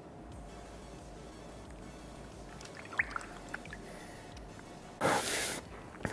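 Water in a plastic tub sloshing and dripping faintly as a painted plastic trim piece is pushed down through hydro-dip film, with a few small splashes about three seconds in and a short, louder rush of water noise near the end.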